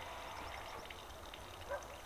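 Faint, steady outdoor background: a low rumble under a soft hiss, with one brief soft sound near the end.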